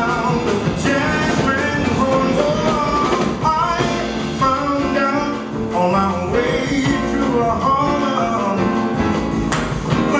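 Live jazz band: a man singing in a deep baritone over a plucked upright double bass and band accompaniment.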